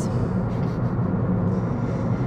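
Steady low road and engine noise heard inside the cabin of a car driving along.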